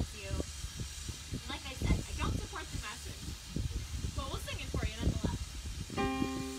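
Speech: a person talking, over a steady low rumble and hiss.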